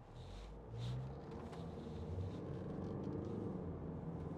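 Cabin noise of a Range Rover Evoque's 2.0 TD4 four-cylinder diesel under way, the engine drone and road rumble growing louder as the car picks up speed, with a couple of short knocks in the first second.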